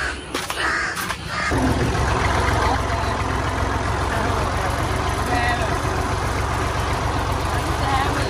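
Tractor diesel engine running steadily at idle with an even low rumble, coming in suddenly about a second and a half in.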